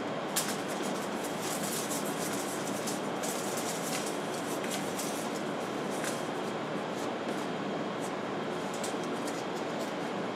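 Light, irregular crinkling and ticking of metal foil tape strips being handled and laid onto a foam board, over a steady rushing background noise.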